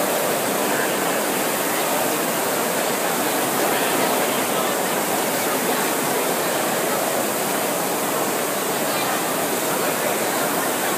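Many Concept2 air-resistance rowing machines running at once, their fan flywheels making a steady rushing whoosh.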